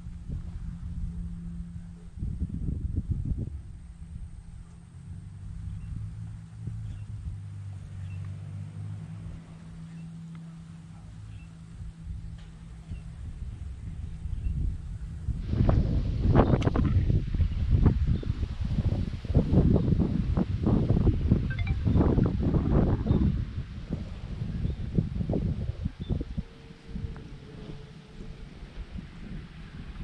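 Wind buffeting the camera microphone, which turns loud and gusty about halfway through.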